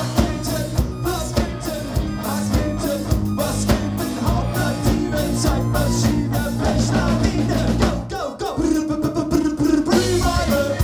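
Punk rock band playing live: electric guitars, bass and drum kit with a singer. The band drops briefly about eight seconds in, then comes back in full.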